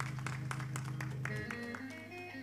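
Church music with held chords, over steady hand clapping at about three claps a second; the clapping stops about one and a half seconds in as higher held notes come in.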